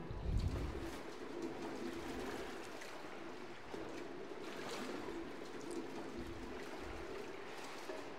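Faint water trickling and sloshing in shallow water on a tiled pool floor, with a low wavering tone running under it.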